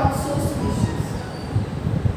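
Marker writing on a whiteboard: irregular low knocks and rubbing from the strokes, with a faint thin squeak about half a second in.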